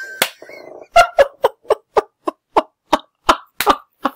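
A man laughing hard: a run of about a dozen short "ha" bursts, about four a second.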